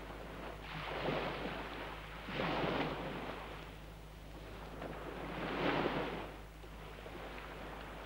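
Sea waves surging in slow swells, three times: around a second in, near three seconds and near six seconds, each washing up and falling away.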